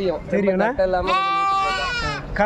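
A goat bleating: one long, drawn-out call of about a second, starting about a second in.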